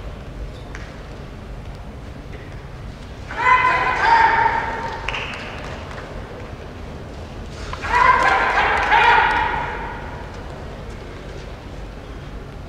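Sumo referee (gyoji) calling out to two wrestlers locked in a belt grip, urging them on: two long, high, drawn-out calls a few seconds apart, over the low hum of the arena.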